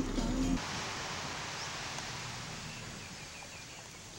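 Music cuts off about half a second in, leaving a steady outdoor hiss of sea surf and wind that slowly fades, with a short run of faint bird chirps near the middle.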